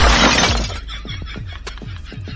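A loud shattering crash, a breaking-glass sound effect laid on a slapstick stick blow, sudden at the start and fading over about a second, with background music under it.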